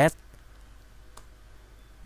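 A single faint keystroke click on a computer keyboard about a second in, over a low, steady room hum.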